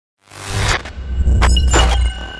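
Sound effects of a channel logo intro: a few sharp, glitchy noise sweeps over a heavy low rumble, starting a moment in after silence.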